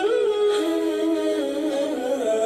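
Background music carried by a hummed, wordless vocal melody of held notes that slide smoothly from one pitch to the next.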